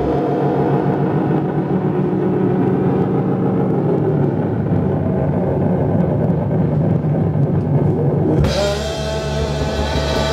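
Live psychedelic rock band with electric guitar, keyboard and drum kit: a sparser passage of held, droning tones without the low end, then the full band, bass and drums, comes crashing back in about eight and a half seconds in.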